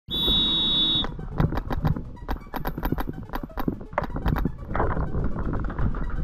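A start buzzer sounding for about a second, then paintball markers firing in rapid, irregular strings of pops.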